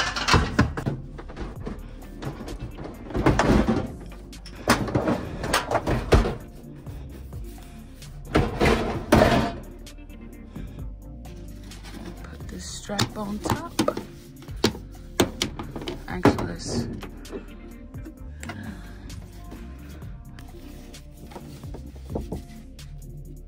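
Background music, over a string of knocks and thuds from a microwave oven being pushed and settled into a cabinet shelf. The thuds are heaviest in the first half.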